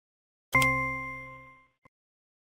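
A single electronic ding from the interactive workbook software as an answer is selected, a bright bell-like chime that starts suddenly and dies away over about a second, followed by a faint click near the end.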